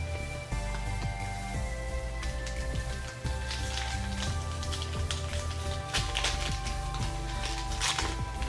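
Background music with held tones over a steady bass line. A foil booster-pack wrapper crinkles as it is torn open, about halfway through and again near the end.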